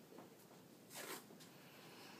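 Medical supply packaging being handled at a bedside table: one short rasping rip about a second in, with a few faint ticks around it, otherwise near silence.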